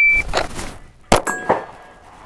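Shot timer's start beep, then about a second later a single pistol shot drawn from the holster, followed by a brief ring from the steel target.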